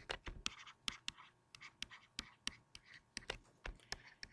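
Stylus tapping and scratching across a tablet screen as words are handwritten: a quick, irregular run of faint clicks and short strokes.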